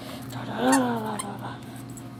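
A puppy's single short whine-like call, rising then falling in pitch about half a second into play, over rustling and clicks from the toy and hands.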